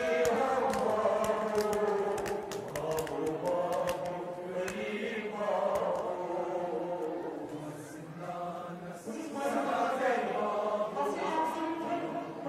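A crowd of men chanting a Muharram mourning lament (noha) together, in phrases a few seconds long, led by a voice on a microphone. Sharp slaps sound through the first few seconds.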